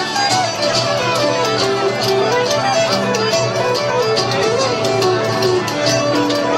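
Folk dance band playing a lively tune, a melody over a steady, even beat.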